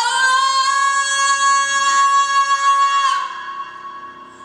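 A female singer holding one long high note for about three seconds, amplified through a microphone, with piano accompaniment; the note ends about three seconds in.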